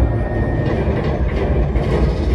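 Loud, steady low rumble of a motion-simulator ride's flight sound effects played through the theatre speakers.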